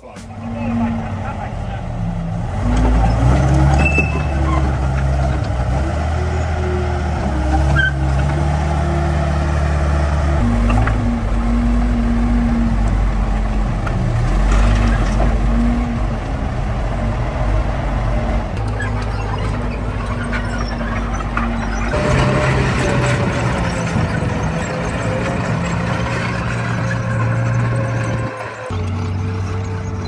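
Rolls-Royce Meteor V12 tank engine running, heard across several clips in turn, its pitch and level changing abruptly at each one, with voices over it.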